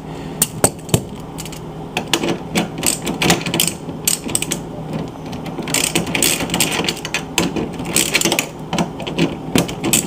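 Hand socket ratchet clicking in several runs as it turns the bolts of a refrigerator door hinge, loosening them.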